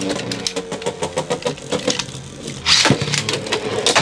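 Two Beyblade X tops, Dranzer Spiral 4-60F and Knight Lance 4-60T, spinning with a steady whir in a plastic Beyblade X stadium, with rapid clicking and rattling as they hit each other and the stadium. A louder, harsher clash comes a little under three seconds in.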